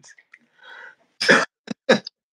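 A man coughing: three short coughs starting about a second in, the first the loudest.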